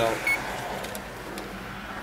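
A man's word ending, then faint steady background noise with a low hum. There is one short high beep about a third of a second in.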